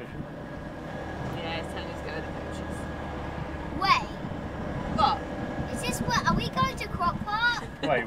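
Inside the cab of a converted lorry while it drives: a steady low engine drone and road rumble.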